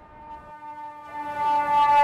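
Emergency vehicle air horn sounding one long, steady-pitched blast that starts faint about half a second in and grows loud as the vehicle approaches.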